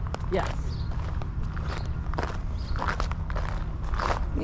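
Footsteps crunching on loose gravel at a steady walking pace, over a steady low rumble.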